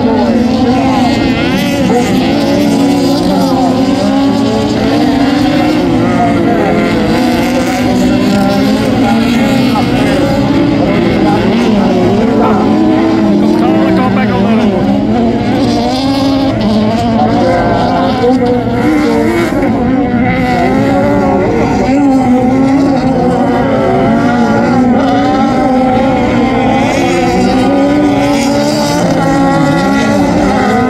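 Several Volkswagen Beetle autocross cars racing on a dirt track, their engines overlapping in one loud, steady noise. The engine pitches keep rising and falling as the drivers accelerate and back off.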